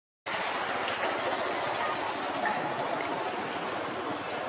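Steady, even rushing outdoor background noise, starting about a quarter second in after a brief dropout to silence.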